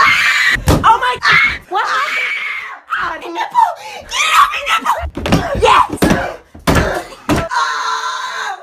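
Teenage boys screaming and yelling loudly, with several sharp thumps among the shouts.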